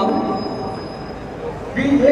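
Tram wheels squealing on the rails: a thin, high, steady whine that dies away after about a second and a half.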